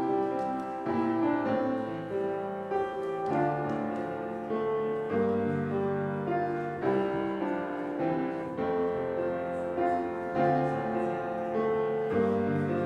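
Slow keyboard music in held chords, changing every second or two: the closing voluntary at the end of a church service.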